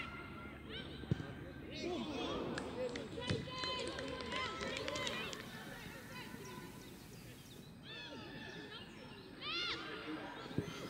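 Shouting from players and spectators during live soccer play: several overlapping high calls, busiest in the middle and rising again near the end. A sharp knock about a second in is a ball being kicked.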